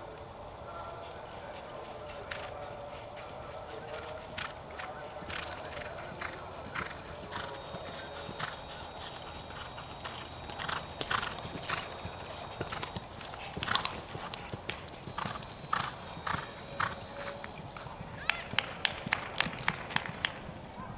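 Thoroughbred horse galloping on turf. Its hoofbeats come in about halfway and are loudest near the end, where they fall in an even beat of about three a second. A high chirp repeats about twice a second throughout.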